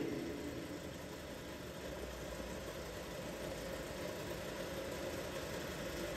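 A steady, low mechanical hum in the background, with no sudden events.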